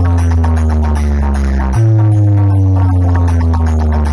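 Electronic dance music played loud through a large DJ sound-system stack of horn speakers and bass cabinets: two long, deep bass notes that each slide slowly down in pitch, the second starting a little under two seconds in.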